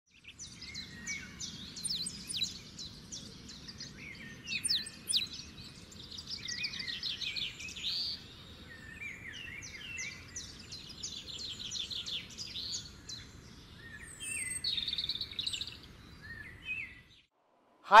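Several birds chirping and singing in quick trills over a steady low background rumble of outdoor ambience; it all cuts off suddenly about a second before the end.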